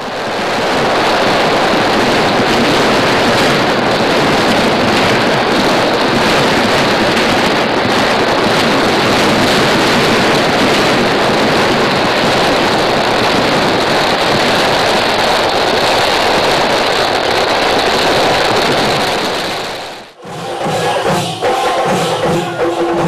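A fireworks barrage: a dense, unbroken run of firecracker explosions merging into one loud, continuous crackling din for about twenty seconds. It cuts off suddenly near the end, and drum and percussion music follows.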